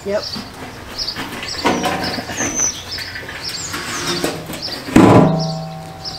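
A corrugated galvanized steel window well being set down with a loud metallic clang about five seconds in, then ringing on with a steady hum for over a second.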